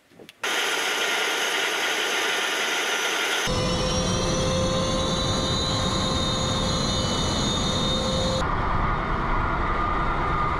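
Su-30 fighter's twin jet engines running on the ground: a loud steady roar with a high turbine whine. It starts suddenly about half a second in. A few seconds later a deep rumble joins and the whine rises slightly in pitch, and near the end the sound shifts abruptly.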